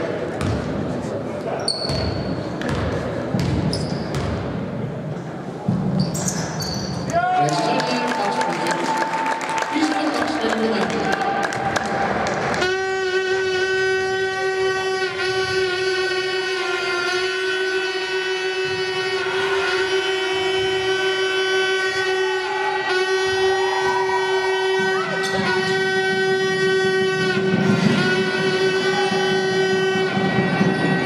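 Basketball game sound in a sports hall: the ball dribbling and shoes squeaking on the court, with voices. From about twelve seconds in, a long, steady pitched tone with many overtones sounds over it and holds to the end.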